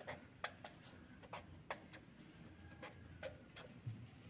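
Marker pen on paper as letters and bond lines are drawn: about ten faint, irregular ticks of the tip tapping and stroking the page.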